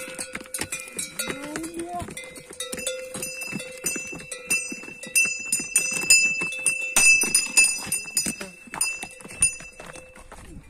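Loaded pack mules walking past on a stony trail: hooves clopping on rock and the bells hung at their necks ringing steadily as they go.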